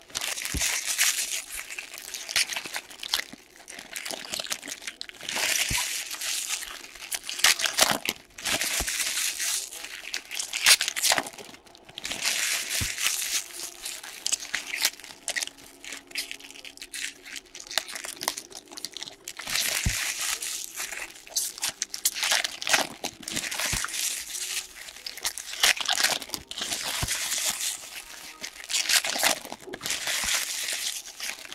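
Foil hockey card pack wrappers being torn open and crumpled by hand, in repeated bursts of crinkling, with sharp clicks in between.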